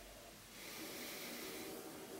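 A faint, long sniff through the nose over a wine glass, starting about half a second in and lasting over a second: the taster drawing in the wine's aroma.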